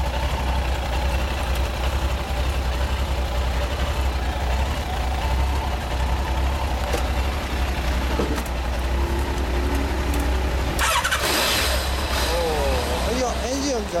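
Large Kawasaki motorcycle engine idling steadily through its exhaust, with a brief louder burst about eleven seconds in.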